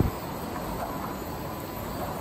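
Steady, even machinery noise of a sawmill's board grading and packing line, with no distinct knocks or strokes.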